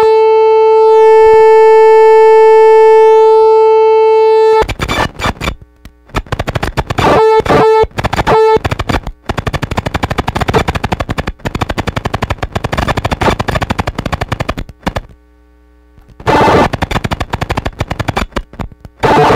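Circuit-bent Yamaha PSS-9 Portasound synth crashing from a starved supply voltage: a loud, steady held tone for about four and a half seconds, then rapid stuttering clicks and glitchy noise with brief snatches of the tone. It cuts out briefly near the end, then the noisy bursts return.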